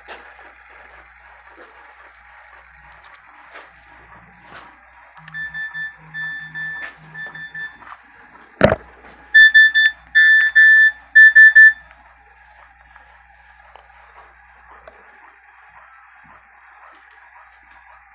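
Electronic beeping: a softer run of short steady tones about five seconds in, a single sharp click, then a louder run of beeps for a few seconds. Under it there is a faint steady mechanical background.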